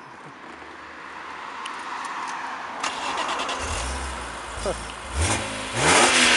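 BMW Z4 M roadster's 3.2-litre straight-six started: the starter clicks and cranks about three seconds in, then the engine catches and settles. Near the end it is blipped twice, rising in pitch.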